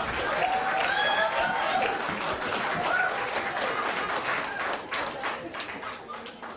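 Audience applauding and laughing after a stand-up comedian's punchline, dying away near the end.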